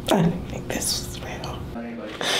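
A woman whispering in a breathy voice, with a brief voiced note near the end.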